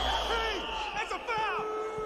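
Crowd at a basketball game in a film soundtrack: spectators' voices cheering and calling out, with one long held call near the end.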